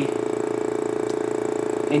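KNF UN820.3 oil-free dual diaphragm vacuum pump running steadily, a hum with a fast, even pulse from its diaphragm strokes. It is pulling vacuum on a small oven chamber about two minutes into the pump-down, close to its final vacuum of about 28 inHg.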